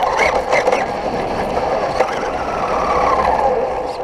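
Electric radio-controlled monster truck driving on pavement, heard from a camera mounted on it: a steady motor whine over tyre and wind noise, easing off near the end.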